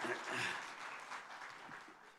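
Audience applauding in a hall, the applause peaking early and then dying away steadily.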